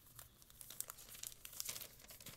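Faint rustling and crinkling of a sheet of paper being handled, with a few small sharp crackles.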